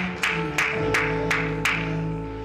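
Live church band music: sustained chords held under sharp percussive hits about three times a second, the hits stopping near the end.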